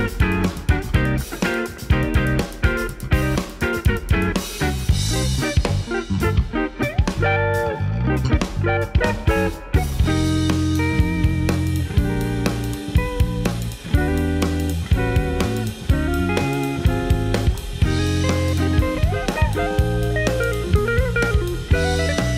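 Live jazz-funk instrumental played by an electric guitar, electric bass and drum kit. Busy drumming fills the first few seconds, the texture thins out about six to ten seconds in, and then the full band settles into a groove, with the bass holding long low notes.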